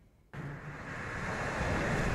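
Rocket engines at liftoff of a United Launch Alliance Atlas V: a dense, deep noise that comes in suddenly about a third of a second in and builds to a steady level.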